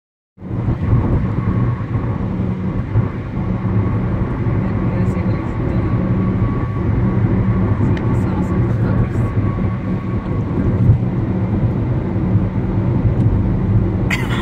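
Car engine and road noise heard inside the cabin while driving: a steady low drone.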